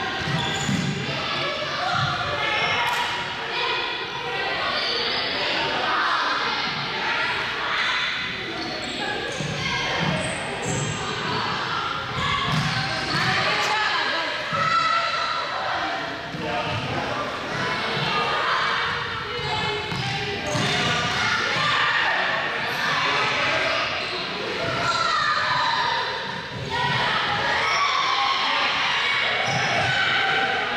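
Indistinct chatter of several voices, echoing in a large sports hall, with balls bouncing on the hard floor now and then.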